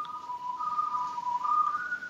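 Ice cream truck's jingle coming through a video-call link: a simple melody of pure electronic tones stepping between a few notes, with a higher note near the end.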